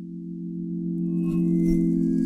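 Opening music: a sustained low synthesizer chord swelling in, with faint high steady tones joining about a second in.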